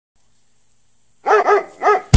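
Three quick, high-pitched dog barks, starting about a second in after near silence.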